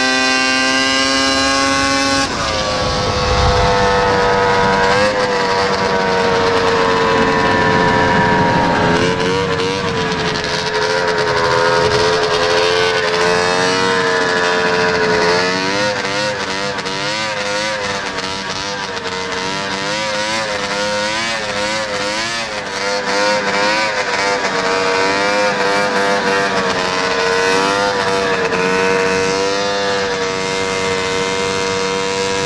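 1981 Arctic Cat El Tigre 6000 snowmobile's two-stroke engine running hard at high revs from on board while racing. Its pitch drops about two seconds in, dips briefly a few times, then wavers rapidly through the middle stretch as the throttle is worked, over a steady rush of wind and track noise.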